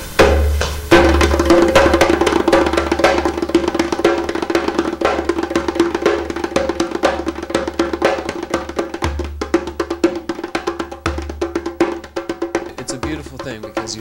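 Djembe played by hand in a fast, dense rhythm of sharp slaps and tones, in the style of an Arabic drum, with a few deep bass strokes.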